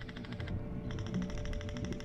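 Airsoft gun firing on full auto: a fast, even run of clicks, about twenty a second.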